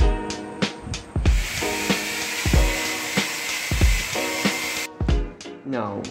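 Background music with a steady beat, over which an electric drill runs from just over a second in for about three and a half seconds, then stops abruptly.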